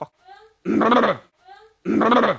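A man's loud, harsh vocal outburst, a burp-like yell, played twice in a row as a looped edit. Each time it is a short rising squeal followed by about half a second of rough, full-voiced sound.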